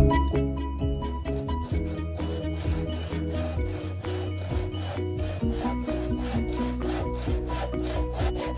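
Hand saw cutting a dry bamboo pole in repeated back-and-forth strokes, over background music.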